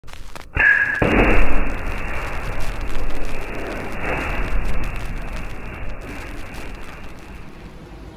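An explosion: a sudden blast about half a second in, then a long rumbling tail that flares up again twice and slowly fades. The whole sound is muffled, with no high end.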